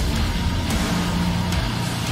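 Heavy metal breakdown: heavy, low-pitched distorted guitar and drums, playing steadily.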